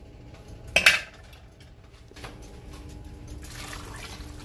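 A single sharp knock against the cooking pot about a second in, then a thick blended mixture poured from a jug into a pot of simmering tea, the pouring sound building steadily over the last couple of seconds.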